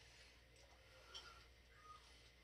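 Near silence: room tone with a steady low hum and two faint short clicks, one about a second in and one near the end.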